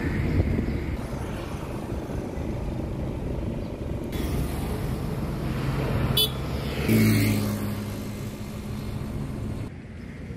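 A motorcycle engine passes close by about seven seconds in, loud at first and then fading as it moves away, over a low rumbling street background. A short sharp click comes just before it, and the sound cuts off abruptly near the end.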